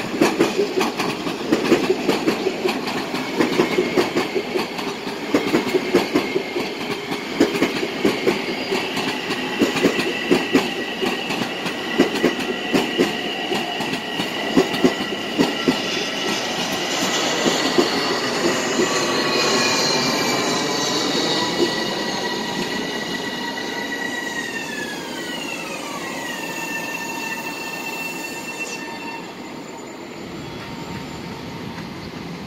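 Long Island Rail Road electric train running past on the rails with a rapid clickety-clack of wheels over the joints. From about halfway a high whine sets in, holds steady, then glides down in pitch near the end as a train slows to a stop at the platform.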